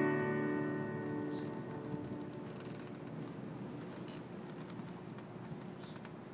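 The final chord of a strummed acoustic guitar ringing out and slowly dying away, ending the song.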